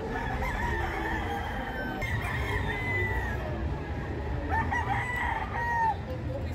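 Gamecock roosters crowing, three crows in turn from different birds, the last and loudest near the end, over a steady low rumble of a crowded hall.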